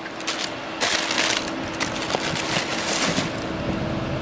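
Tissue paper crinkling and rustling in a shoebox as a sneaker is unwrapped and lifted out, a run of crackly bursts lasting about three seconds.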